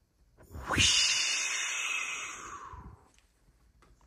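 Toilet-flush whoosh: a rushing hiss that starts about half a second in, is loudest at first and fades away over about two seconds.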